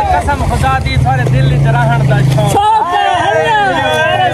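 Men's voices over a steady low rumble that cuts off abruptly about two and a half seconds in.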